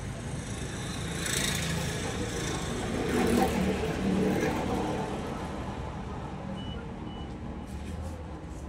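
A road vehicle passing close by, its sound rising over a couple of seconds and fading away, over a steady low hum of traffic. Two short high beeps near the end.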